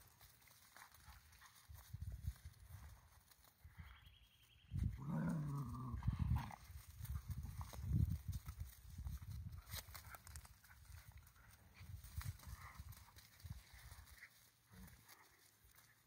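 Italian greyhounds and a black-and-white long-haired dog play-fighting on gravel: paws scuffling on the stones, with a dog growling for a second or so about five seconds in.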